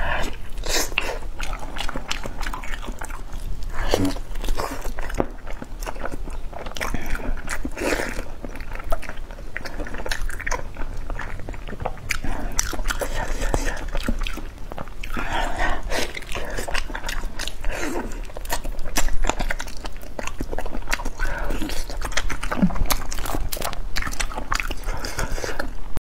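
Close-miked biting and wet chewing as braised pig's trotters are eaten, with many small clicks and smacks of the lips and soft skin.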